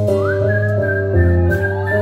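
A whistled melody, sliding up into high held notes, over a live rock band with guitars, bass and keyboard.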